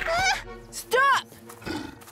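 Short high-pitched cartoon vocal cries: a brief call at the start, then a louder one that rises and falls in pitch about a second in, over background music.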